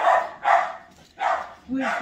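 A dog barking, three short barks about half a second apart, with a woman's voice resuming speech near the end.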